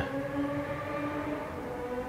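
A sport motorcycle ("bullet bike") going by, its engine a steady drone.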